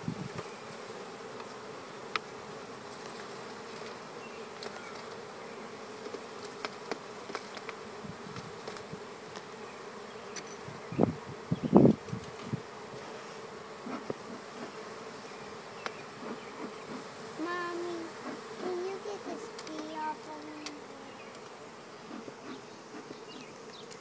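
Honeybee colony buzzing steadily in an open hive, with scattered small clicks. A single loud knock comes about halfway through.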